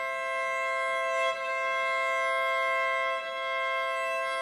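Cello playing a long, slow double stop: two high notes held together, steady in pitch, with two smooth bow changes.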